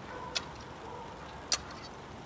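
Tin snips cutting chicken wire strand by strand: two sharp metallic snips about a second apart.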